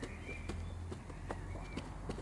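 Cardboard tube dabbed up and down into paint on a plate, making a series of light taps, about two a second.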